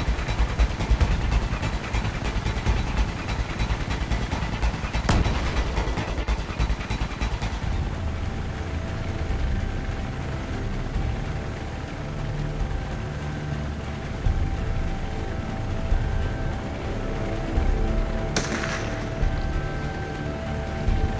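Film soundtrack mix: a helicopter's low rotor rumble with a single sharp crack about five seconds in, giving way after about eight seconds to music with sustained notes over a low pulse, and a short burst of noise near the end.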